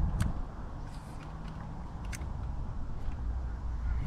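Wind rumbling on the microphone, with a few faint clicks from handling the fishing rod and reel.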